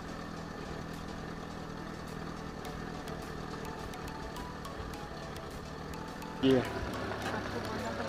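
Safari bus engine running steadily at low speed, a constant low hum.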